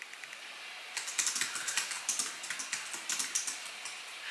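Typing on a computer keyboard: quick, irregular key clicks starting about a second in.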